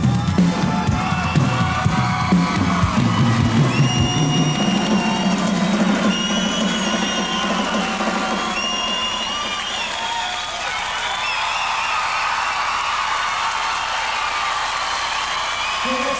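A live rock band's drums and bass ring out in the last hits of a song for the first few seconds. Then a concert crowd cheers, with many overlapping shrill whistles.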